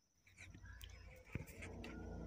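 Faint animal calls in the background over a low hum, with a single sharp click a little past halfway.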